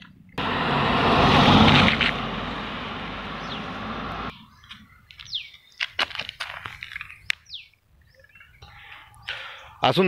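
A loud rushing noise for about four seconds that cuts off suddenly, followed by birds chirping, with a few sharp clicks.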